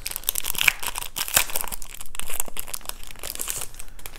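Clear plastic wrap crinkling and tearing as it is peeled off a stack of game cards: an irregular run of small crackles.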